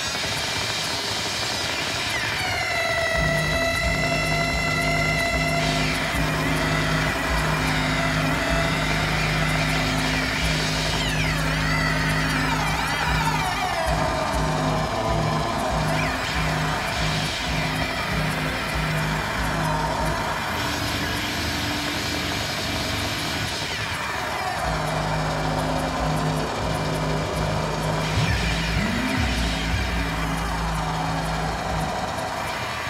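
Live experimental electronic music from hand-played electronic sound devices: a steady low drone that chops on and off, with tones sweeping down in pitch a couple of seconds in and again near the middle, over a continuous noisy hiss.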